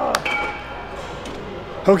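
A single metallic clink from the leg extension machine's weight stack, ringing briefly on one high tone before dying away, over steady gym room noise.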